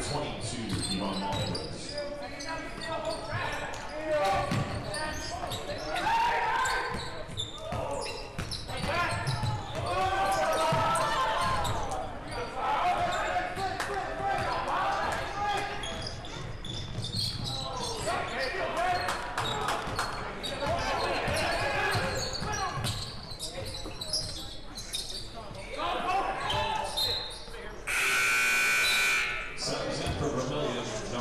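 Basketball being dribbled and shoes on a hardwood gym floor, with players' and spectators' voices echoing in the hall. Near the end a loud, steady buzzer sounds for about a second and a half.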